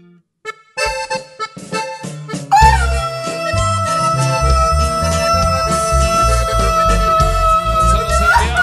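Norteño band playing live. After a brief quiet, short staccato chords come in about a second in; then, from about two and a half seconds, the accordion holds one long note over bass and drums.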